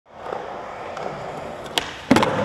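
Skateboard wheels rolling steadily over smooth concrete, then a single sharp crack near the end as the tail is popped and the board leaves the ground.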